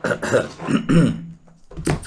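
A man coughing and clearing his throat.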